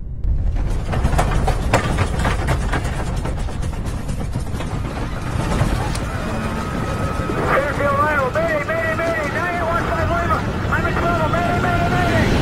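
Airliner cabin rumbling and rattling as the plane shakes in turbulence, starting suddenly just after the seatbelt sign comes on. About seven seconds in, a drawn-out voice with a wavering pitch joins over the rumble.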